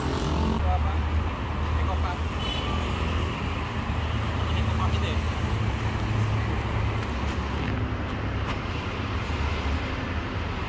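Road traffic from a busy city street: cars and motorcycles running past in a steady low rumble.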